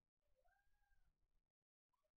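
A cat meowing faintly once: a single call under a second long that rises and then falls in pitch.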